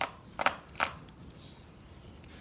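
String pulled by hand through a wooden block press: three short, quick strokes of noise, about half a second apart.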